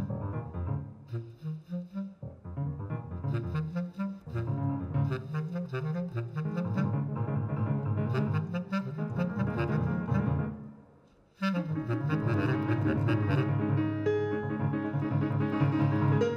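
Bass clarinet and piano playing jazz together, with low, stepwise moving lines. The music breaks off briefly about eleven seconds in, then both come back in with held notes.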